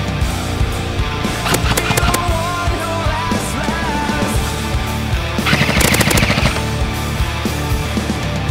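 Bursts of airsoft gun fire, rapid clicking shots: a short burst about a second and a half in and a longer one at about five and a half seconds, over loud heavy-metal music.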